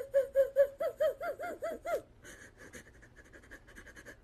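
A young woman sobbing in rapid, gasping breaths, about five a second, that fade to quieter shaky breathing about two seconds in.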